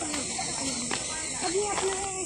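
Boys' voices talking indistinctly over a steady high hiss.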